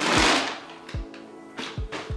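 Crinkly plastic stuffing being pulled out of a bag, with a loud crackle in the first half second and fainter rustles after it. Background music with a steady low beat plays underneath.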